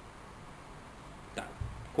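A pause in a man's speech, filled with faint steady room hiss. Near the end comes a short, clipped vocal sound: a quick syllable or a catch in the throat.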